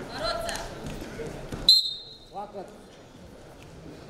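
A referee's whistle, one short shrill blast about halfway through that halts the wrestling bout, with shouts from the hall just before it.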